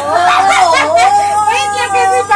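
A woman's voice holding one long, high, wavering note, a howl-like sung wail that starts suddenly and loudly.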